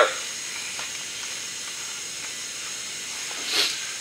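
Steady low hiss of background room noise, with no distinct tool sounds; a brief soft rush of noise near the end.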